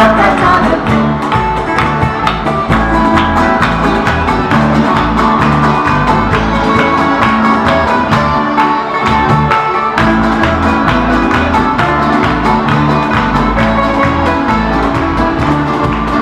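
A Canarian parranda folk group playing live: accordion, bass guitar and strummed plucked strings (laúd and guitars) in a steady, lively rhythm, here a mostly instrumental stretch.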